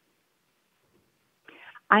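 Near silence, then a woman's voice starts speaking near the end.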